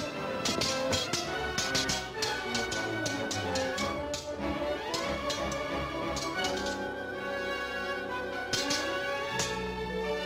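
Orchestral film score playing under a rapid, irregular run of sharp metallic clicks and clashes, the sound of sword blades crossing in a fight.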